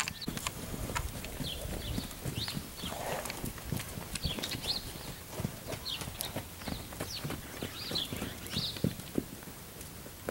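Irregular soft footfalls on dry dirt, with small birds chirping repeatedly in short high calls.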